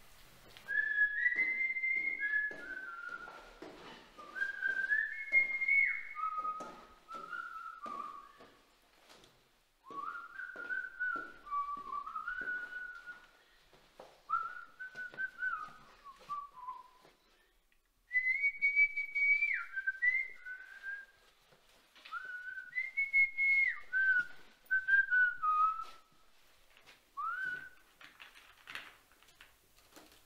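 A person whistling a melody in several phrases, with sliding and stepping notes and short pauses between the phrases. Faint short knocks come in under the tune.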